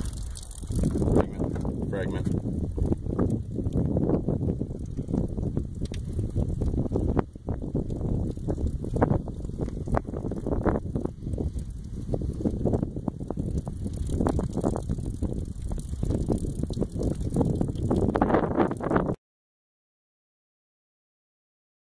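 Wind buffeting the microphone outdoors, an uneven low rumble that gusts and fades, stopping abruptly near the end.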